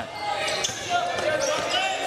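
Game sound on an indoor basketball court: a basketball dribbled on the hardwood floor, with faint voices in the background of the hall.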